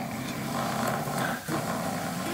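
A person snoring: one long, rough snore that breaks off about one and a half seconds in, then another begins.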